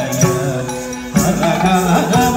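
Carnatic-style devotional song, a sung chant with ornamented, gliding melody over a steady drone and instrumental accompaniment. The singing dips and then comes in louder with a new phrase just past the middle.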